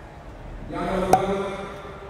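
A voice holding one steady vocal note for about a second, starting just under a second in, with a sharp click partway through.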